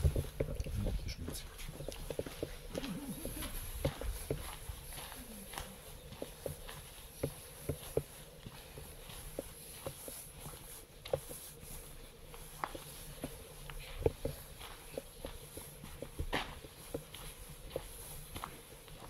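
Footsteps on a gravelly dirt floor: irregular light steps all the way through, over a faint steady high hiss.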